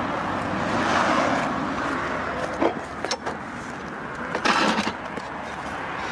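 A passing car's road noise swelling and fading over the first couple of seconds, then a few light knocks and a short burst of rustling noise about four and a half seconds in.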